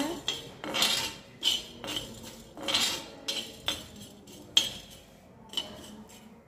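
Steel spatula scraping and stirring whole spices across a dry iron tawa as they roast, in short uneven strokes about once a second, with one sharper metal clink late on.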